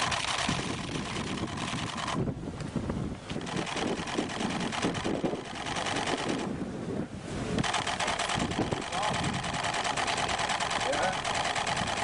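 Camera shutters clicking in rapid bursts, pausing twice.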